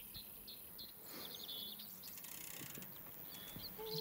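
Faint open-air ambience with short series of bird chirps, one about a second in and another near the end.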